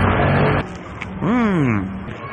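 A man's short 'mmm' of enjoyment while chewing a falafel sandwich, a single hum that rises then falls in pitch about a second in. Before it a loud rushing noise with a low hum cuts off suddenly about half a second in.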